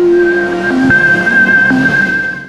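Logo intro sting: synthesized music with steady held tones over a whooshing swell, with two sharp hits, one about a second in and one near the end.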